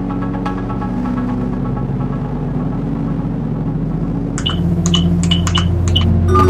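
Peak-time techno track at 126 BPM in D minor playing: sustained synth chords over a bass line with sparse percussion hits. About four and a half seconds in, a deeper, heavier bass and a sharp percussion hit on roughly every beat come in.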